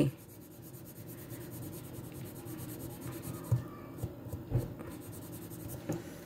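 Colored pencil scratching steadily on journal paper as a block of the grid is shaded in, with two or three soft knocks near the middle.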